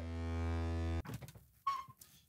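A steady electrical buzz from a large array of plugged-in Christmas string lights cuts off abruptly about a second in. Near the end comes a short creak, as of a door opening.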